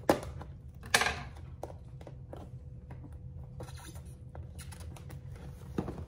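Small scissors snipping at the wrapping of a cardboard box, with two sharp clicks, one at the start and one about a second in. Lighter ticks and rustles follow as the box is handled.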